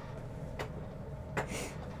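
Two faint clicks from a computer keyboard, about a second apart, over a steady low room hum, then a short breathy sigh near the end.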